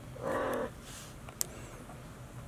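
A Maine Coon cat gives one short meow, about half a second long, near the start. A single sharp click follows about a second and a half in.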